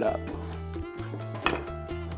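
Metal utensil mashing avocado in a glazed ceramic bowl, knocking and scraping against the bowl, with one sharp clink about one and a half seconds in. Background music with steady held notes underneath.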